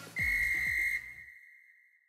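A single steady, high-pitched whistle blast, like a referee's whistle, loud for about a second and then trailing away, as the music beneath it fades out.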